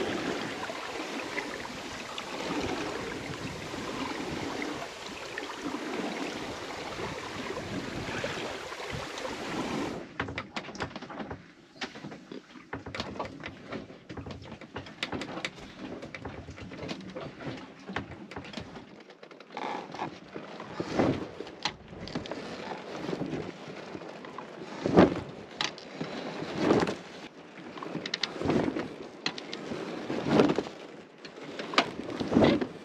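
Water rushing and splashing along the hull of an Alberg 30 sailboat moving slowly under sail. After a cut about ten seconds in come irregular knocks, clunks and creaks from the boat's cabin and rig as she rolls in small seas, with a few louder thumps near the end.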